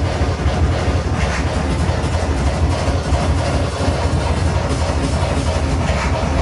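Loud breakcore electronic music played live from a laptop over a club sound system, a dense unbroken mix with heavy bass.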